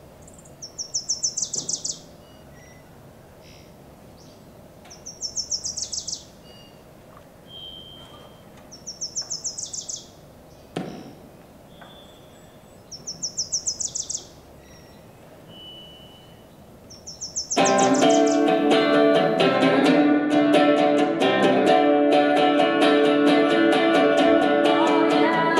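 A bird repeats a short, fast trill about every four seconds, with a thin whistled note in between and a single knock midway. About seventeen seconds in, a Stratocaster-style electric guitar starts playing strummed chords, loud.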